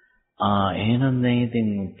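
A monk's low male voice, after a short pause, intoning a long drawn-out syllable at a steady, level pitch in the chanted manner of Pali recitation during a Buddhist sermon.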